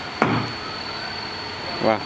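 A motor running steadily, an even whirring noise with a thin high-pitched whine over it.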